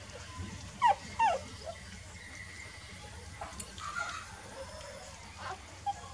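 Newborn puppies squeaking while nursing: two short, high squeaks falling in pitch about a second in, the loudest sounds, then a few fainter squeaks and whimpers later on.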